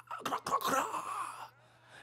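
A man's breathy, wordless vocal sounds: half-voiced moaning and exhaled ad-libs in two short stretches over about a second and a half, then a brief pause. A steady low hum runs underneath.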